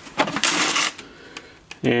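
Plastic socket case sliding across a concrete floor in a short scrape, then a few light clicks.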